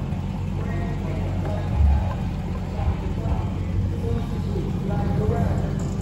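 Dodge Charger Scat Pack's 6.4-litre Hemi V8, fitted with a mid-muffler delete, idling as a steady low rumble, with a brief low thump about two seconds in. Faint music and voices sit above it.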